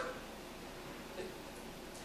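Quiet room tone: a steady faint hiss with no distinct sounds.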